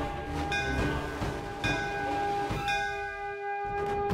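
A temple bell struck three times, about a second apart, each stroke ringing on.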